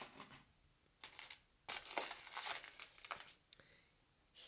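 Crinkling and rustling as jewelry and its wrapping are handled, a few rustles from about a second in, loudest around two seconds in.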